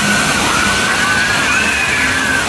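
Kiddie roller coaster in motion: a loud, steady rush of ride noise with long, slightly wavering high-pitched tones held over it.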